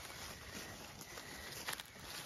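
Sheep browsing on cut pine limbs: faint rustling and chewing among pine needles and dry leaf litter, with a few small clicks.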